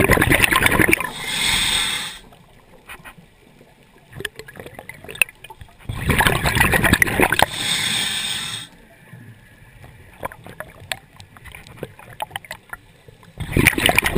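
Scuba diver breathing through a regulator underwater: a loud burst of bubbling and hissing near the start, again about six seconds in, and once more near the end, with faint scattered clicking in the quiet stretches between breaths.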